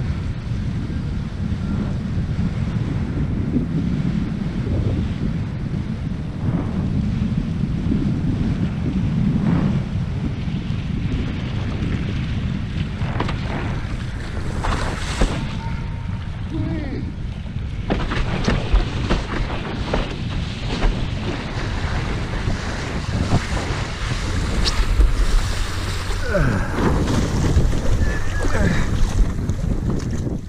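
Wind buffeting the microphone with water slapping and splashing against a windsurf board as it sails through chop. The low wind rumble is strongest in the first half; short splashes and knocks come more often in the second half.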